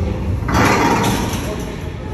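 Heavy load being dragged across the floor on a thick rope in a seated rope pull, a low rumble, with a loud noisy rush about half a second in that lasts about a second.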